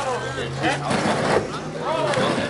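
People's voices talking, over a steady low hum that fades out about two-thirds of the way through, with a short burst of noise around the middle.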